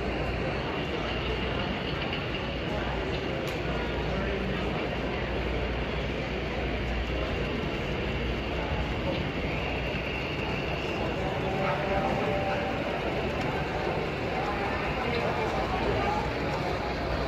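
Steady exhibition-hall background noise: a low hum under a murmur of distant voices, with no close speech.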